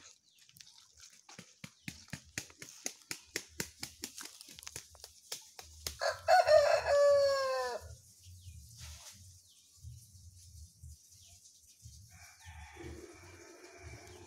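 A rooster crows once, about six seconds in, a loud call of a little under two seconds that falls in pitch at its end. Before it comes a run of sharp clicks, about five a second, and near the end a steady low hum sets in.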